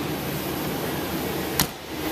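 Steady hiss of background room noise, with one short, sharp knock about one and a half seconds in.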